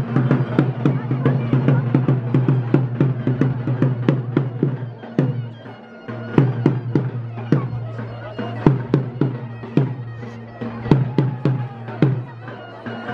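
Live folk dance music: a drum beating fast, several strokes a second, under a reedy wind instrument holding a steady drone. The music dips briefly about five and a half seconds in.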